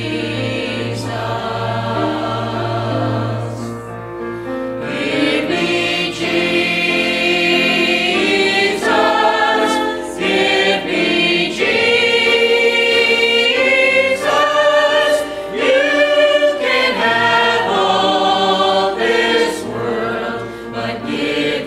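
Mixed church choir of women and men singing a hymn together, with a low held note beneath them for the first few seconds.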